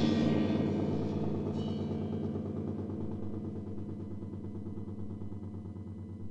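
Noise music: a loud crash struck just before rings on and slowly dies away over a steady, pulsing low drone.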